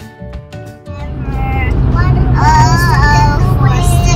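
Background music with plucked guitar notes gives way about a second in to the steady low rumble of road noise inside a moving car's cabin, over which a child sings in a high voice.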